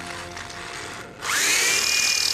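A power tool's electric motor spinning up about a second in, its whine gliding up in pitch and then holding steady. Before it there is only a faint hum.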